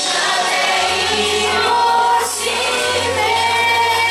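Mixed choir of young men and women singing a Christian worship song together, holding long sustained notes.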